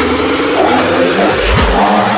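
Electronic dance remix build-up: a buzzing synth line with fast repeating pulses rising slowly in pitch, then two deep kick drum hits come in about a second and a half in.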